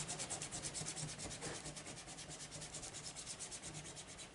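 Faint rubbing of paper being handled, a fast, even rasp that fades slightly.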